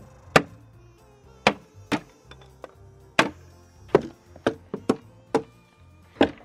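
A small mallet striking a wooden box frame to knock out its board dividers: about eight sharp knocks at irregular intervals.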